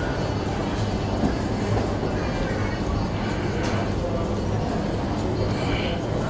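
Busy shopping-mall ambience: a steady wash of indistinct crowd chatter over a constant low hum.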